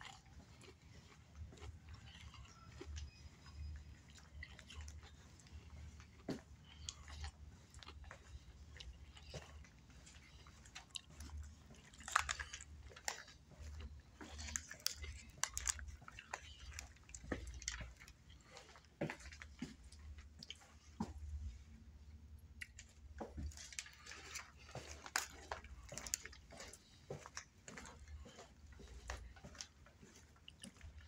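Someone chewing and crunching a crunchy snack close to the microphone, with irregular clicks and low thumps from the phone being carried while walking. The crackling grows denser near the middle and again in the last third.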